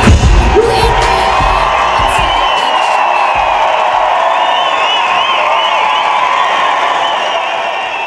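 A live pop song ends on a final hit, and a large concert crowd cheers, whoops and whistles; the band's bass drops away after about two and a half seconds, and the cheering fades out near the end.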